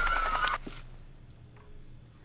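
Music-video sound effects from a chaotic action scene: a loud noisy rush with a thin wavering whistle-like tone, cutting off abruptly about half a second in. Faint low background fades out after it.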